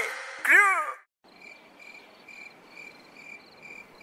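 The last sung phrase of a song ends about a second in. Then come faint, high chirps repeating evenly a little over twice a second, like a cricket.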